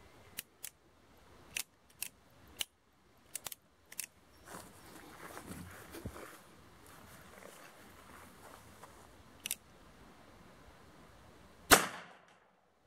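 A series of short metallic clicks as a revolver is handled and readied, then a single sharp .45 Colt revolver shot just before the end, much louder than the clicks.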